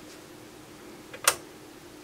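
A single sharp click about a second and a quarter in, preceded by a fainter one, over a faint steady hum: the detent of an HP 3400A RMS voltmeter's rotary range switch being turned a step.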